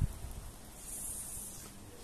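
Outdoor background with a high, thin hiss that swells and fades, after a dull low thump at the very start.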